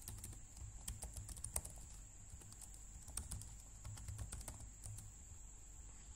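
Computer keyboard keys being typed, faint clicks in irregular bursts.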